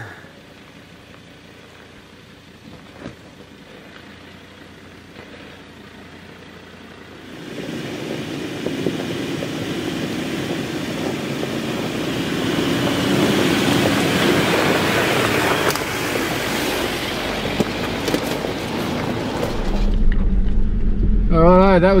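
A four-wheel drive coming along a rocky dirt track, the crunch and rush of its tyres on gravel and stones building up over several seconds after a quiet start. Near the end a low, steady engine rumble comes in, heard from inside a vehicle's cabin.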